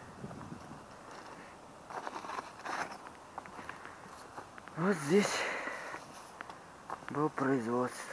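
Footsteps crunching over broken brick and concrete rubble, with small scattered crackles. A person's voice sounds briefly about five seconds in and again near the end, louder than the steps.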